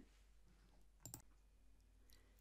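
A single faint computer mouse click about a second in, heard as a quick press and release, against near silence.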